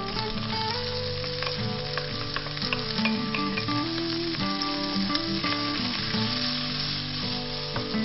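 Diced carrot, peas and sweetcorn sizzling as they hit hot oil in a frying pan with fuet and prawns, the sizzle growing about halfway through. A wooden spatula knocks and scrapes against the pan a few times. Acoustic guitar music plays underneath.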